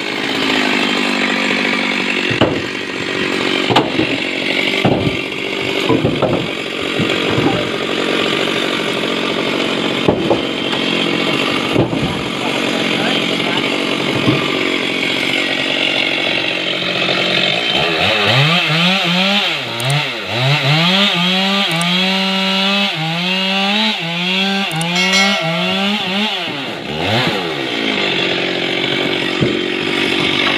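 Petrol chainsaw cutting acacia logs, working steadily under load with occasional knocks of wood during the first half. From a little past halfway its engine revs up and drops back over and over, about once a second.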